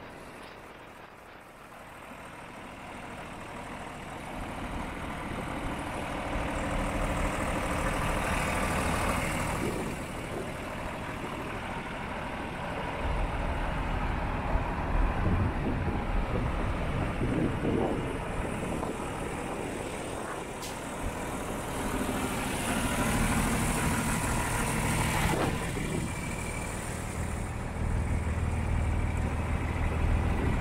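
John Deere 2955 tractor's diesel engine idling steadily, getting louder over the first several seconds and strongest near the end.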